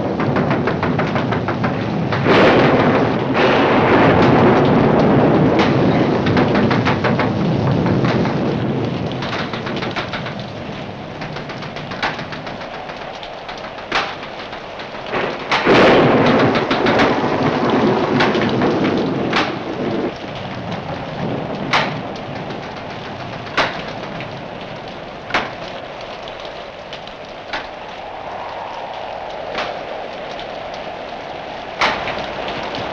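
Heavy rainstorm on an old film soundtrack: steady rain, with a long roll of thunder a couple of seconds in and another about halfway. Sharp cracks come every second or two through the second half.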